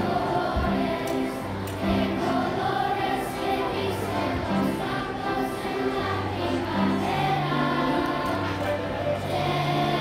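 Children's choir singing a song in unison over an accompaniment that carries held low bass notes.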